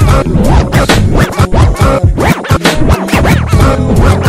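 Chopped-and-screwed Houston hip-hop track, slowed and pitched down, with DJ record scratching over a heavy bass beat and no rapping.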